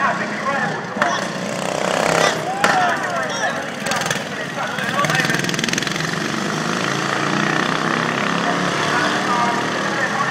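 Engines of racing ride-on lawn mowers running as the mowers go by, with crowd voices over them.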